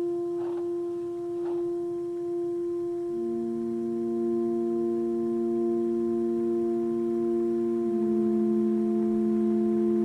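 Background music of sustained, steady electronic tones, like a soft ambient pad. New lower notes come in about three seconds in and move to another chord near the end. Two faint brief knocks or rustles sound in the first two seconds.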